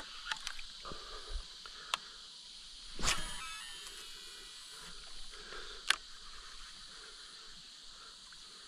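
Steady high insect hum from the riverbank, broken by scattered light clicks and knocks of fishing gear on the kayaks. The loudest is a sharp knock with a brief ring about three seconds in.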